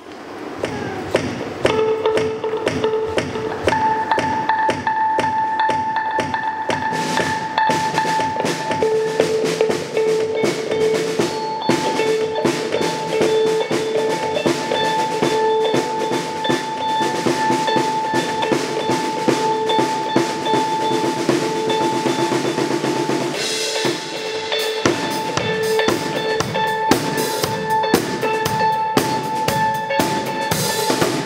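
Band music with a drum kit playing a steady beat, kick and snare, under long held tones. The arrangement changes about 23 seconds in, briefly thinning and then coming back fuller and brighter.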